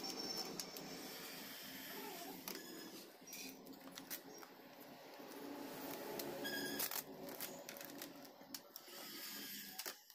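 A sheet of black vinyl sticker film being handled and peeled from its backing paper: faint crinkling and rustling of plastic film, with scattered small clicks and crackles.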